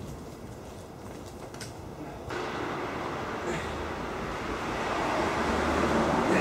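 Steady urban background noise, quiet at first and louder from about two seconds in, with a faint low hum near the end.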